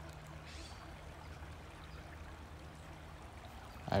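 Creek water flowing steadily, with a low steady hum under it that fades shortly before the end.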